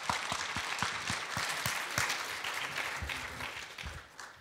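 Audience applauding, a dense patter of many hands clapping that eases slightly near the end.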